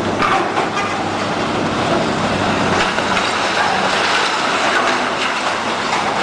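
Excavator demolishing a concrete building: its diesel engine runs steadily under a continuous crunching, grinding and clattering of concrete and debris breaking and falling.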